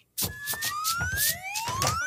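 Cartoon exit sound effect: several whistling tones glide upward together over a series of noisy rushes.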